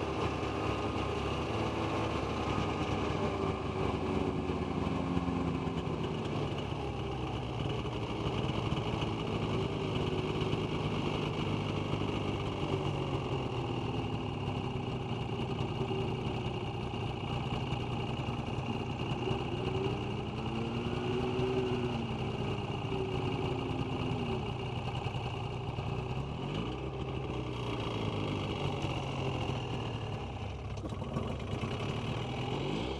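Snowmobile engine running steadily at low speed. About two-thirds of the way in, an engine note rises and then falls once in pitch.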